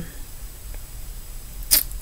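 A pause between sentences: faint steady low room hum, with one brief mouth noise from the speaker near the end.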